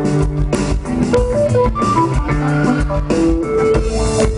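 Live band playing an instrumental passage with no vocals: electric guitar lines over bass and drum kit.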